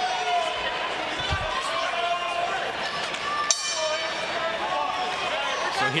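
Boxing ring bell struck once about halfway through, ringing out to signal the start of the fifth round, over the background chatter of voices.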